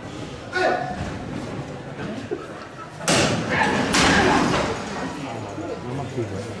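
Men's voices talking in a group, with a sudden loud bang about three seconds in followed by a second or two of noisy clatter.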